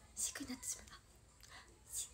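A young woman softly speaks a short word, then quiet room tone for the rest.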